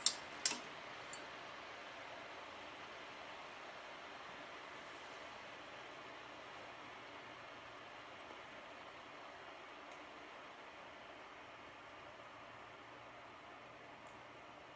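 Steady faint hiss of room noise, with two sharp clicks about half a second apart at the very start.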